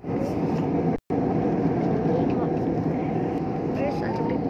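Steady roar of jet engine and airflow noise heard inside the cabin of an Airbus A320-family airliner in flight, with a faint steady hum running through it. The sound drops out briefly about a second in.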